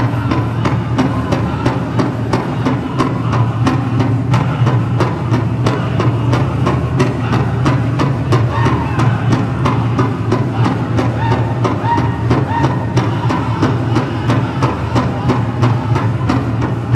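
Powwow drum group singing with a steady, even beat on a shared big drum.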